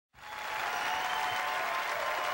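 Concert audience applauding in a large hall, fading in at the very start.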